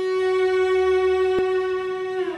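A 4/4 cello, a Stradivarius-model copy with a spruce top and maple back, sustaining one long bowed note, held steady. A single brief click comes a little past the middle.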